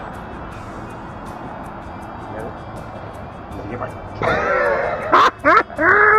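Steady background noise for about four seconds, then from about four seconds in a voice makes high, wordless calls that swoop up and down in pitch, with a sharp click just before the end.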